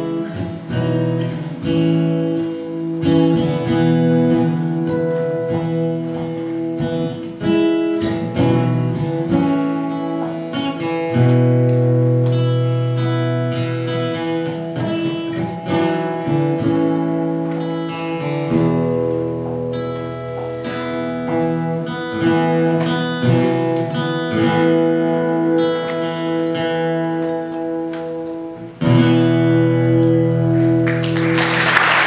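A solo acoustic guitar playing an instrumental passage of picked and strummed chords, with a louder strummed chord near the end.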